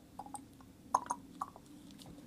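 A few faint, light clicks and taps from handling a small plastic paint bottle while filling it, over a faint steady low hum.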